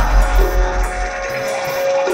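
Live experimental electronic music from a DJ set: a deep pulsing bass that drops away about a second in, a long held mid-pitched tone, and fast high ticks on top.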